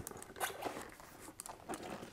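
Faint rubbing and creaking handling sounds from a neoprene dive boot being worked into a fin's foot pocket, with a few small scattered clicks.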